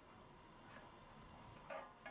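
Near silence with a few faint, brief scratches: a pencil drawing a line along a square across a small wooden stick.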